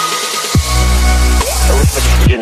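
Electronic dance music with a heavy bass that drops out briefly and comes back about half a second in, with repeated falling pitch sweeps over it.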